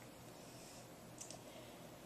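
Two faint clicks a little over a second in as fingers handle a squid's beak, otherwise near silence.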